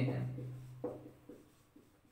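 Marker pen writing on a whiteboard: a few short, quick strokes in the second half, after a drawn-out spoken word at the start.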